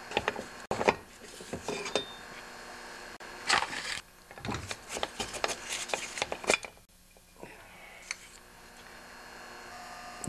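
Metal parts inside an opened small-engine block being handled and pulled out by hand: scattered clinks, knocks and short metal-on-metal scrapes, busiest from about three and a half to six and a half seconds in.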